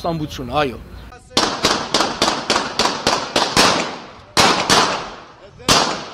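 Rapid gunshots in a street, one crack after another at about five a second for over two seconds, each trailing off in echo, followed by a few more shots.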